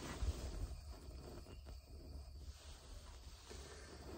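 Quiet outdoor background: a faint, steady low rumble with a few soft knocks in the first second.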